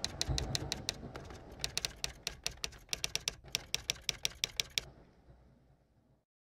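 Rapid keystroke clicks in short runs, a typing sound effect, stopping about five seconds in, over a low rumble that fades away.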